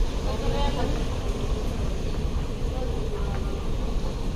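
Airport terminal ambience: a steady low rumble with indistinct voices of people nearby, heard most around the start and again about three seconds in.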